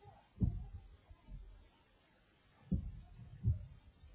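Four muffled low blasts, heard from inside a stopped car's cabin: a strong one about half a second in, a faint one after it, then two more in the second half.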